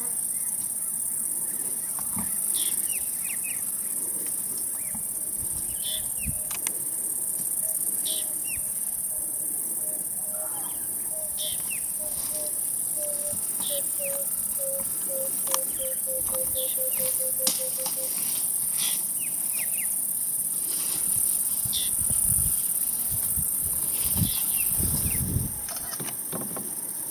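Bush ambience: a steady high insect drone with short bird calls every second or two. In the middle, a bird gives a run of low cooing notes that come faster and faster and fall slightly in pitch. Low rumbling comes near the end.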